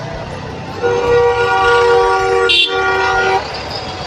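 A vehicle horn held for about two and a half seconds in slow, congested road traffic. It sounds as two close pitches together, over the low running of engines.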